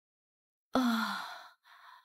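A woman sighing: one voiced out-breath that starts suddenly and falls in pitch as it fades, followed by a softer breath, with the weariness of someone stretching a stiff neck.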